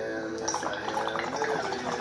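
Water bubbling in a 3D-printed bong as a hit is drawn through it, starting about half a second in, over background music.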